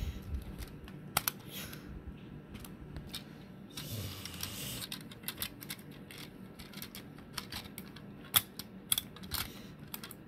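Irregular plastic clicks and clacks of an Optimus Prime Transformers toy's parts being folded and snapped into place by hand as it is transformed. There is a brief rustle about four seconds in, and the sharpest clacks come near the end.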